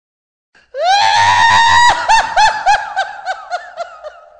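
A very high-pitched shrieking laugh starts just under a second in. It begins with a held, rising squeal for about a second, then breaks into a run of quick 'ha' pulses that slow down and fade.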